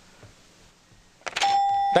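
A short bell-like ding about a second and a half in, one steady tone held for about half a second, after a near-quiet first second. It is a quiz sound effect marking a correct answer.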